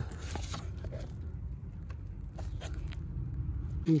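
Handling noise: light scrapes, rustles and small clicks from a gloved hand working close to the microphone, over a steady low rumble.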